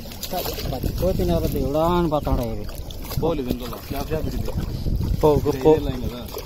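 Men's voices talking, mostly speech, over a steady low rumble of wind on the microphone and water around someone wading.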